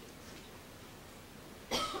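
A single short cough near the end, after a stretch of faint room tone.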